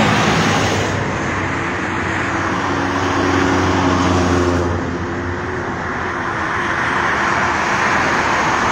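Highway traffic: a steady rush of tyre and engine noise from cars and a truck passing on a multi-lane toll road, easing a little about five seconds in and building again near the end.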